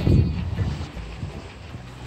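Wind buffeting the microphone: a low rumble, strongest in the first half second, that dies down to a softer rush.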